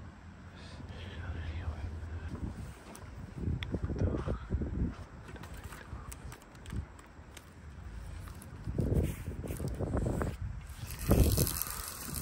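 Wind gusting on the microphone in irregular low rumbles, with a few faint knocks.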